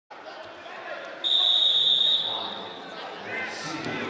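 A referee's whistle gives one long, steady, high blast about a second in, lasting about a second before it fades. Voices carry through the arena hall behind it.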